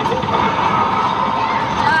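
Loud arcade din: a game cabinet's steady electronic sound over a background of crowd voices, with a short exclaimed "ah" at the very end.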